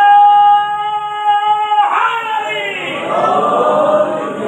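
A man's voice chanting into a microphone. He holds one long, high, steady note for nearly two seconds, then breaks off briefly and goes on with a wavering, sliding melody.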